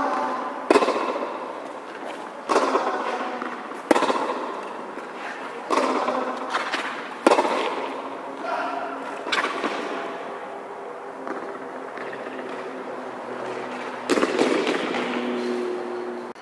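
Tennis ball struck back and forth in a baseline rally on a hard court, a sharp hit about every one and a half to two seconds, each echoing under the court's metal roof.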